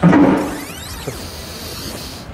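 A sudden whoosh right at a picture cut, fading over about half a second, then a bright hiss with sweeping tones that gradually dies away: an edited transition sound effect.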